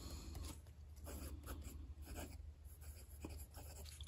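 Pilot Custom 823 fountain pen with a broad nib writing on Endless Regalia paper: faint, short scratches of the nib, stroke after stroke, across the page.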